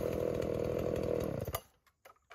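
Dolmar 7300 two-stroke chainsaw running steadily at idle, then switched off about one and a half seconds in, its sound stopping abruptly with a click.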